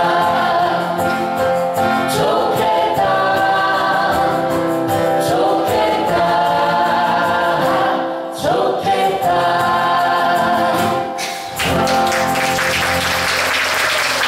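Small mixed group of male and female voices singing a slow song in harmony over acoustic guitar accompaniment, with short pauses between phrases. Near the end, as the last chord rings on, audience applause begins.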